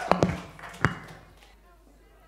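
A few sharp knocks in the first second, with a low hum ringing on after them, then quiet room tone.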